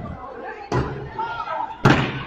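Two heavy blows about a second apart as a large blade is struck against a parked car, with people's voices behind.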